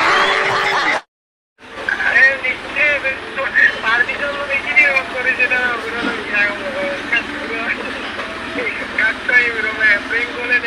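About a second of a television studio audience laughing, cut off abruptly, then a moment of silence. After that a voice comes over a phone's speaker during a call, thin and lacking bass.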